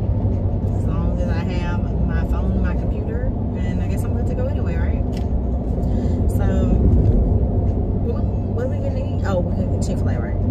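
Steady road and engine rumble inside the cabin of a moving SUV, with intermittent talking over it.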